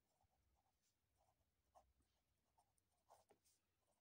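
Very faint marker-pen strokes, heard as a few short scratches over near silence while words are hand-written.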